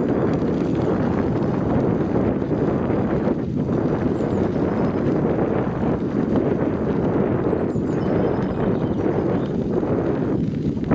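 Bicycle rolling over an unpaved forest path: a steady rumble and rattle from the tyres and bike.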